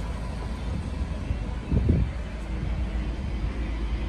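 Low steady outdoor background rumble, with a brief louder swell about two seconds in.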